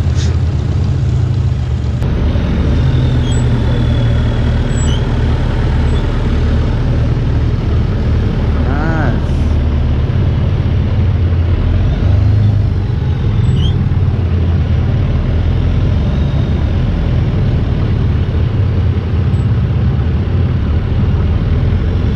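Long-tail boat engine running steadily under way, a loud, even low drone.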